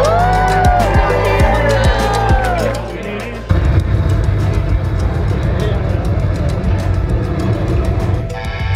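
Music with a steady low beat and sweeping tones plays over a hall's sound system, dips briefly, then about three and a half seconds in gives way to a sudden loud, low rumble: a rocket-launch sound effect from the intro video.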